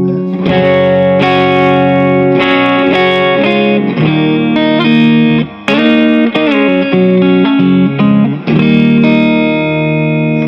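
Electric guitar — a 335-style semi-hollow with Barley humbuckers — played through a Longhorn Amps El Capitan Dumble-style tube amp, ringing chords and melodic single-note lines with a few string bends. The playing breaks off briefly about five and a half seconds in, then resumes and closes on a sustained chord.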